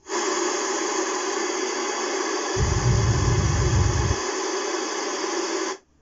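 Loud steady test noise (a hiss) played through loudspeakers for an 85 dB level calibration. About two and a half seconds in, the low-frequency speaker is switched in for about a second and a half, adding a deep rumble under the hiss, then muted again. The noise cuts off suddenly near the end.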